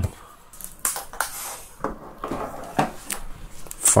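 Handling noise from hands moving a part-assembled Dyson V6 battery pack and an insulation strip: scattered light clicks, taps and rustles, with a sharper click near the end.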